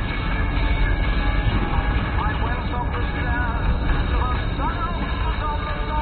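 Steady low rumble of a small car's engine and tyres heard from inside the cabin while driving. From about two seconds in, music with a voice plays over it.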